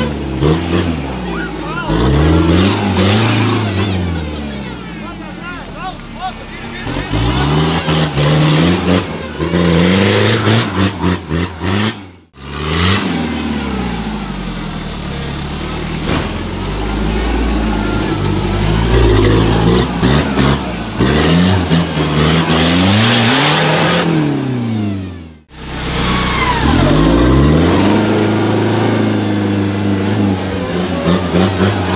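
Off-road trial buggy's engine revving hard in repeated bursts, its pitch climbing and falling every second or two as it claws up out of a dirt trench. The sound breaks off abruptly twice, near the middle and a few seconds before the end.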